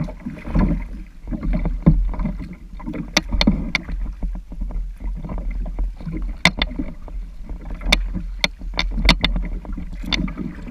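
Water lapping and splashing against the plastic hull of a Sun Dolphin Aruba 10 kayak moving down a shallow river, over a low steady rumble. Irregular sharp taps break through it, a couple about three seconds in and a quick cluster near the end.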